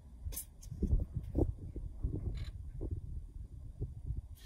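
Low rumble of wind on the microphone, with a few short rustles and clicks of stiff playing cards being rearranged in the hand.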